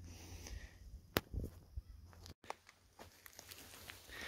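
Faint outdoor background with a few scattered soft clicks and knocks over a low rumble, broken by a brief moment of total silence a little past halfway.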